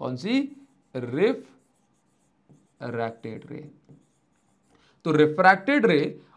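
A man speaking Hindi in short, broken phrases, with silent pauses between them.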